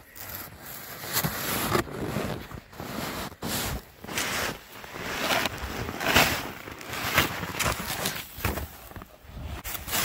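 Snow scraping and crunching under a snow scoop being pushed through deep snow, in a run of irregular strokes about one a second.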